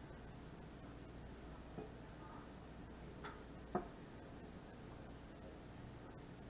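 Quiet kitchen room tone with three faint light clicks, the last and loudest a little before four seconds in.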